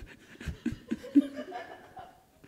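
A man laughing: a string of short laughs, a few a second, that trail off near the end.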